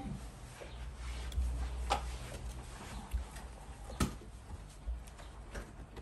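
Table knife scraping around the inside edge of an aluminium cake tin to loosen a baked cake, with light clicks of the blade on the metal, the loudest about four seconds in.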